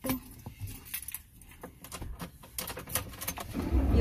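A quick run of light clicks and jingles from small objects being handled in the truck's cab, with a low rumble coming up near the end.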